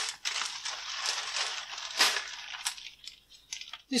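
Clear plastic zip-lock bag crinkling as it is handled and opened, with a few sharp clicks, the loudest about two seconds in.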